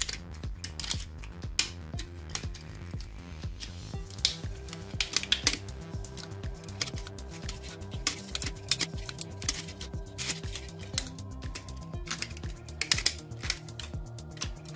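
Irregular light clicks and ticks of enamelled copper magnet wire being pulled and wound by hand through the slots of a power-tool armature, over soft background music with a steady beat.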